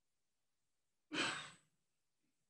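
A person breathing out once into the microphone, a short sigh that starts suddenly about a second in and fades out within half a second.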